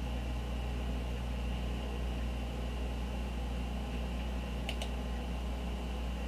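Steady low electrical hum and fan hiss from a computer setup picked up by the microphone, with two quick clicks near the end.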